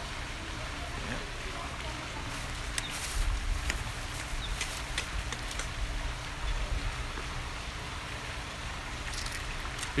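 Steady outdoor background hiss, with a few faint clicks and low rumbles as the handheld action camera is moved around.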